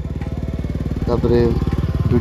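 Motorcycle engine running at road speed, its firing pulses coming fast and even as the bike rides past. About a second in, a voice comes in over the engine.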